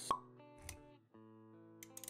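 Intro sound design for an animated logo: a sharp pop just after the start, followed by quiet held music notes, with a soft low thump about two-thirds of a second in and a few small clicks near the end.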